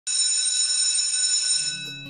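A steady high tone that starts suddenly and holds for about a second and a half, then fades near the end as a low drone comes in: the opening of a TV programme's intro music.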